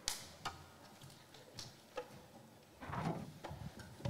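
A few scattered single handclaps as the audience's applause dies away, four sharp claps spread over the first two seconds, then a faint rustle about three seconds in.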